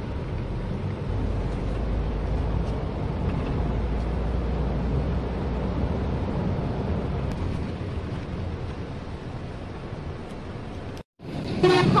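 Engine and road noise of a moving vehicle heard from inside its cabin: a steady low rumble. It cuts out suddenly for a moment about eleven seconds in.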